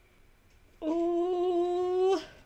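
A woman's sustained closed-mouth hum, a single steady "mmm" lasting about a second and a half, starting a little under a second in and lifting slightly in pitch at the end.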